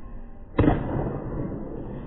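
A pitched baseball smacking into a catcher's mitt: one sharp pop about half a second in, with a short echo off the walls of an indoor training facility.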